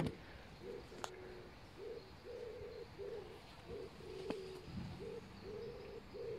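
A pigeon cooing over and over in low, even-pitched phrases, faint in the background. A sharp click comes right at the start, with a couple of faint ticks later.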